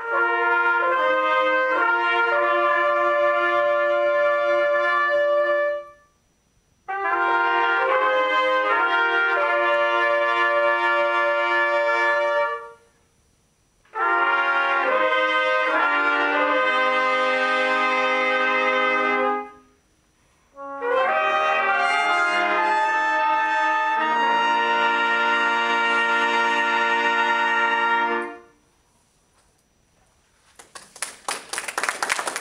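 Trumpet ensemble playing four short chordal phrases, each ending on a held chord, with a silence of about a second between phrases. The last phrase holds longest, with a low note sounding under the chord.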